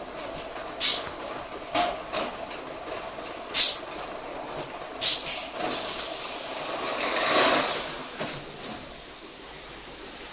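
Pneumatic palletiser working: short sharp hisses of compressed air from its cylinders, spaced a few seconds apart at first, then three in quick succession about five seconds in. A longer swelling rush of noise comes around seven seconds in, with two more short hisses near the end. Steady machine noise runs underneath.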